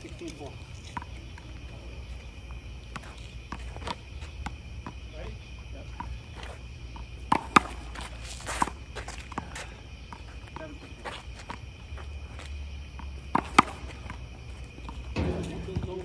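Handball rally: sharp slaps of a rubber handball struck by hand and hitting the concrete wall and court, the loudest about seven and thirteen seconds in, with sneaker steps and scuffs between. A steady high-pitched drone runs underneath.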